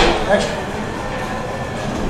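Steady background noise of a busy hall, picked up by an ambient microphone, with a sharp click right at the start and the single word "next" spoken.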